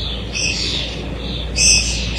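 A bird chirping: two short high calls, one about half a second in and another near the end, over a low steady hum.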